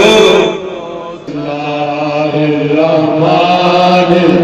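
A man's voice chanting melodically into a microphone, holding long wavering notes. It dips about half a second in and resumes strongly just over a second in.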